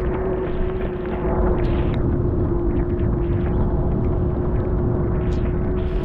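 Wind buffeting the microphone, a steady low rumble, with a faint steady hum running underneath.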